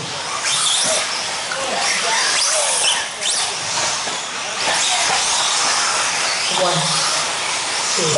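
Several electric 4WD radio-controlled buggies racing on an indoor dirt track. Their high motor whines rise and fall with throttle over a steady hiss of tyres on dirt.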